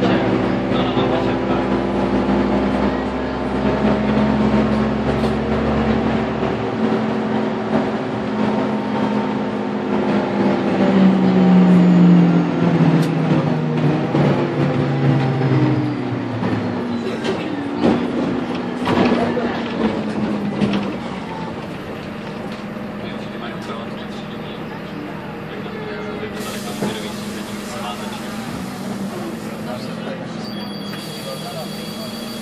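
Karosa B951E city bus's diesel engine heard from inside the cabin, its note climbing and falling as the bus drives on and shifts gears, with knocks and rattles from the body. From about two-thirds through, it settles to a quieter, steady run.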